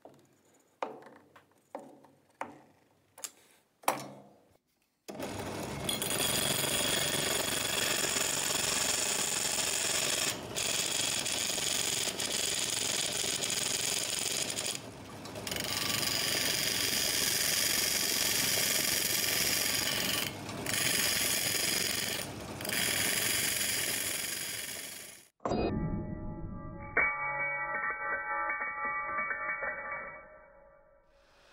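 Brass disc spinning in a drill press chuck with sandpaper held against its edge to sand it round: a loud, steady, hissing grind with a few brief dips, stopping suddenly near the end. Before it come several sharp metal clicks as the disc is tightened onto its screw with pliers, and steady background music follows the stop.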